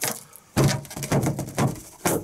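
Pink plastic ruler smacking an inflated black latex balloon again and again, a quick run of about six thuds starting about half a second in.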